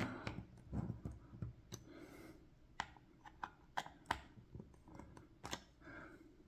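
Small Phillips screwdriver tightening the bottom-cover screws of a laptop: faint, irregular clicks and ticks of the bit working in the small screws.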